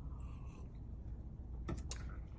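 Faint sipping from a small plastic cup over a steady low hum, then two short sharp clicks close together near the end as the cup is set down on a wooden counter.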